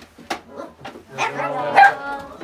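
A dog barking in the room, with the loudest bark near the end, among people's voices.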